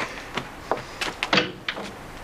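Clicks and knocks of a wooden front door being handled, its lock and latch worked as it is opened: about half a dozen short, separate knocks and clicks.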